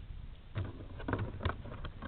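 Wind rumbling on the microphone of a quadcopter's onboard camera resting in grass, its motors stopped, with a few soft, irregular knocks and rustles from about half a second in.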